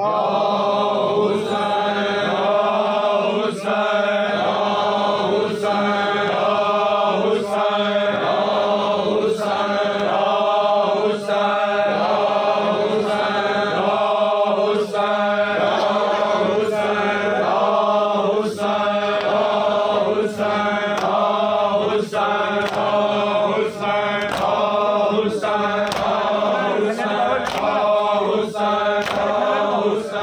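Men's voices chanting a noha (Shia lament) together, with sharp bare-hand slaps on chests (matam) keeping a steady beat about once a second.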